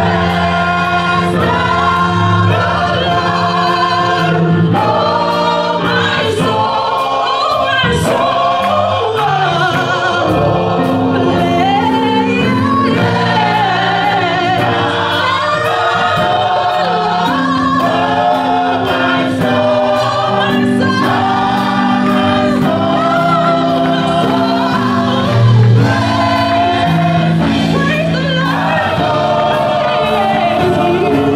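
Gospel choir of men and women singing, led by a voice on a handheld microphone, over held low accompaniment notes and a steady percussive beat.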